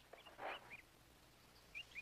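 Near silence with a few faint, short bird-like chirps, and one brief, slightly louder call about half a second in.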